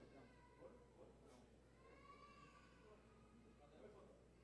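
Near silence: room tone with faint, distant voices.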